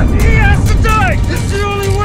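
Several voices shouting and crying out in short, strained bursts during a violent scuffle, with loud film music underneath.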